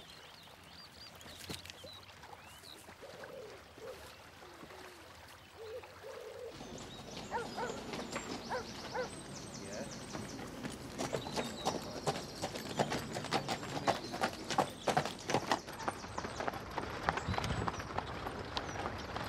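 Hooves of a pair of horses drawing a carriage clip-clop along a dirt track. They start about six seconds in and grow louder as the carriage approaches.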